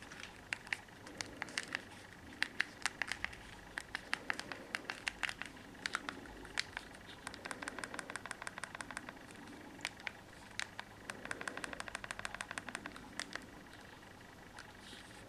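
Plastic keys of a Texet TM-502 slider feature phone clicking as they are pressed, single presses mixed with quick runs of presses.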